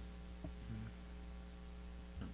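Faint, steady electrical mains hum in the recording, with one faint click about a quarter of the way in.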